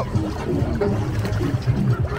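Shallow water sloshing and trickling close to the microphone, with music playing in the background.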